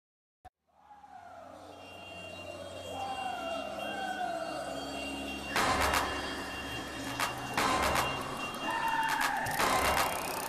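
Street noise of a large group bicycle ride fading in after a click, with a siren wailing: its tone slides down about once a second, then slides upward near the end. A few loud, noisy bursts cut through around the middle.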